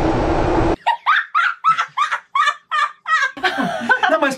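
Steady rumble with a hum inside a moving subway train car that cuts off suddenly, then a person's rapid rhythmic laugh of about nine short high bursts, some four a second, lasting a little over two seconds.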